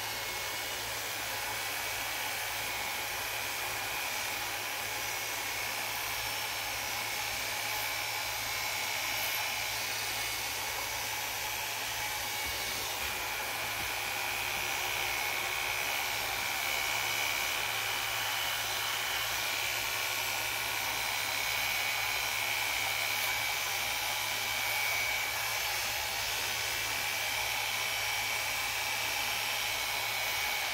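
Electric hair clipper running steadily while cutting short hair around the back and side of the head, a continuous motor buzz with a thin steady whine.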